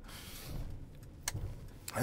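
Low, steady engine and road rumble heard inside a minibus cabin, with a single sharp click just past a second in.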